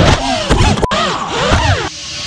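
Brushless motors of a micro FPV whoop quadcopter whining, their pitch swooping up and down with rapid throttle changes during a dive. The whine stops abruptly near the end and a steady hiss follows.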